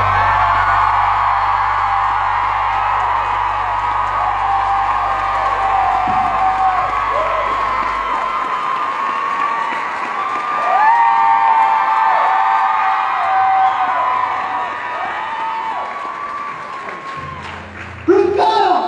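Concert crowd cheering, screaming and whooping as a song ends. The band's last low chord rings out under the crowd for roughly the first eight seconds, then stops.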